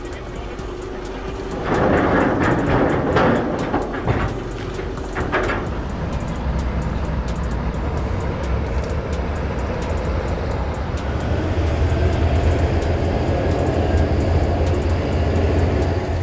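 Low, steady engine rumble of an M3 amphibious bridging rig, building from about six seconds in and strongest near the end. Before it, a few seconds of louder mixed noise with voices and knocks.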